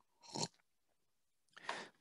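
Two short, faint breath sounds from a man pausing between words, one about a third of a second in and one just before the end, with near silence between them.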